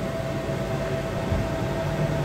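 Air conditioner running in a small room: a steady hiss with a constant faint hum.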